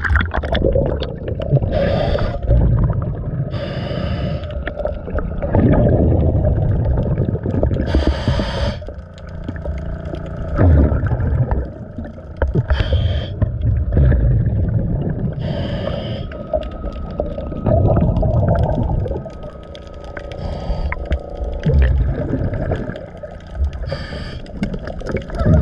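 Scuba diver breathing underwater through a regulator: a short hissing inhale every few seconds, each followed by a longer low rumbling rush of exhaled bubbles.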